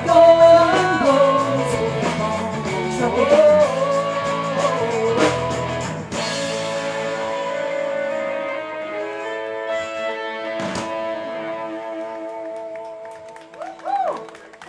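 Live country-rock band with electric guitars, bass, drum kit and female vocals playing the end of a song. The singing stops about six seconds in, then the band holds a final chord that fades out, with one last drum hit partway through the fade.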